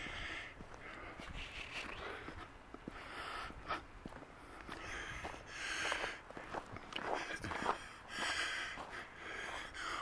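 Soft sounds of a person walking on snow-covered ground: footsteps and breathing close to the microphone, recurring about once a second.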